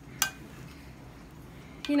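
A metal spoon clinks once against a ceramic bowl while stirring tarhana into cold water: a single sharp clink with a brief ring, then only faint background.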